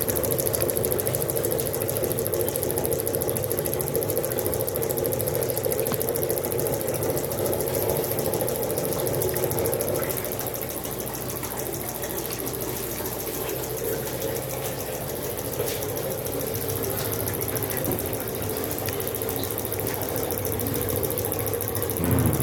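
Homemade pulse motor built on a microwave-oven transformer, running steadily: its magnet rotor spins on a bearing while a magnetic switch pulses the coil. It makes a steady mechanical hum with a rapid, even pulsing, a little quieter about halfway through.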